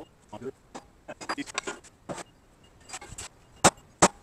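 Scattered clinks and knocks of metal tools being handled, then one sharp, loud metal strike near the end: a hammer hitting a center punch set on a round steel plate to mark a spot for drilling.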